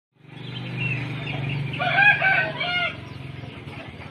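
A rooster crowing: a call of a few short arched notes about halfway through, over a low steady hum.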